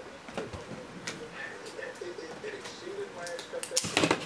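Faint, quiet talking with a few light clicks and taps scattered through it, and a sharper click just before the end.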